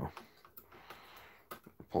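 Quiet handling: a few faint small clicks, most of them in the second half, as pliers work on the brass wheels and clip of a Hermle 1161 clock movement.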